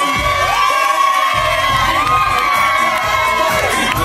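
A crowd cheering and shouting loudly and without a break, many high voices held and overlapping.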